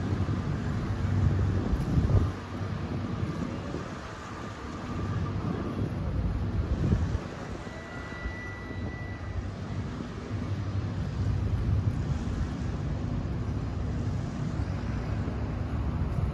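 A low, steady engine drone, with gusts of wind buffeting the microphone about two seconds in and again about seven seconds in.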